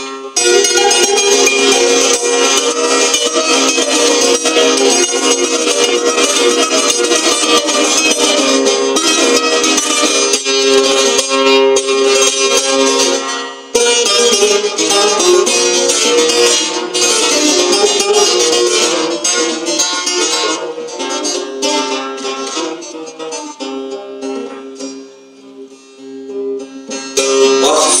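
Solo bağlama (long-necked Turkish saz) played live: a busy run of plucked notes over a steady drone from the open strings. The playing breaks off briefly about halfway and grows quieter near the end.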